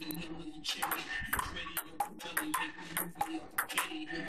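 Table tennis rally: a quick run of sharp clicks as the ball strikes the paddles and bounces on the table, several a second. Faint background music hums underneath.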